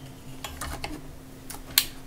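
A handful of light, sharp clicks and taps of small objects being handled on a workbench, the loudest near the end, over a faint steady hum.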